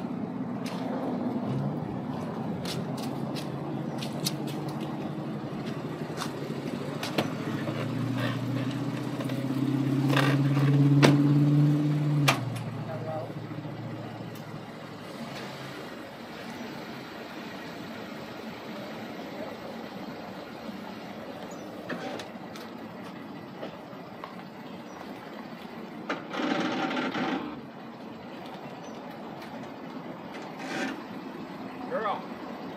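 Pickup truck engine running close by as it backs a boat trailer down a ramp, its note rising and growing louder before it cuts off about twelve seconds in. After that only a quieter outdoor background remains, with a brief louder noise near the end.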